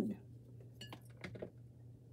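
Faint clinks and light knocks of dishes and kitchenware being handled, a few short ones about a second in and one more near the end, over a low steady hum.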